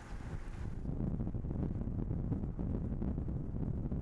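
Wind buffeting a microphone over a steady low rumble from a moving vehicle. A brighter hiss drops away about a second in.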